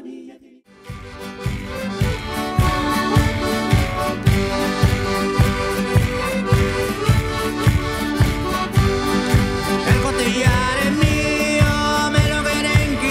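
Folk band of accordion, guitars, violin and a hand-held drum striking up an instrumental dance tune about a second in, with an even beat of about two and a half strokes a second.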